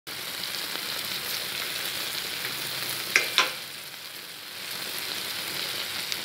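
Eggplant, minced pork and scallions sizzling in hot oil in a metal pot, a steady frying hiss. Two sharp clicks come a little after three seconds in.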